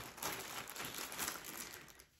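Soft, irregular rustling of a garment being handled and unfolded, fading toward the end.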